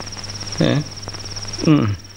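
Crickets chirring steadily in a high, rapidly pulsing trill, with two short spoken words from a man over it.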